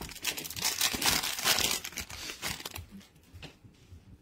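Foil wrapper of a 2023 Panini Prizm Football card pack torn open and crinkled by hand, a dense crackle that eases off about three seconds in.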